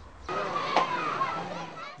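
Many children shouting and playing in a swimming pool, their voices overlapping into a steady din that starts a moment in.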